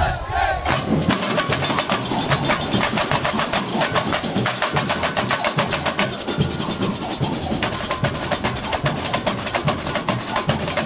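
Samba school bateria (drum corps) playing a fast samba rhythm, coming in about a second in after a shout: a dense rattle of tamborins and snare strokes over low surdo beats.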